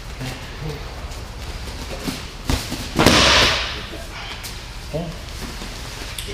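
A wrestler taken down onto a padded mat: a sharp smack about two and a half seconds in, then a half-second louder thud and rush of noise as the body lands.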